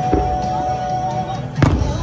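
Fireworks bursting at a distance over music holding a long note; a small bang comes right at the start and the loudest, sharpest bang about one and a half seconds in.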